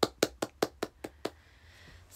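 A quick, even run of sharp taps by hand, about five a second, growing fainter and stopping about a second and a half in.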